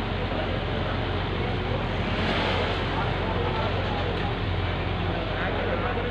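Truck-mounted concrete boom pump's diesel engine running steadily, a low even hum under general street noise.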